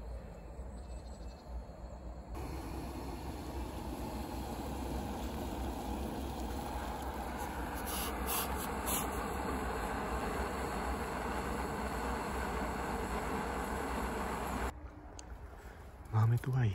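Gas-canister camping stove burning with a steady hiss under a steel pot of steaming water. It comes in suddenly a couple of seconds in and stops shortly before the end, with a few light clicks about halfway through.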